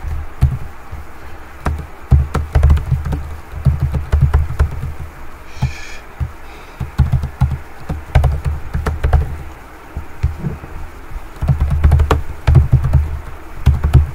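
Typing on a computer keyboard: irregular runs of key clicks and dull thuds, with short pauses between the runs.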